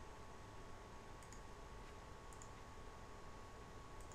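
Near silence with two faint computer mouse clicks, about a second in and again a little past two seconds.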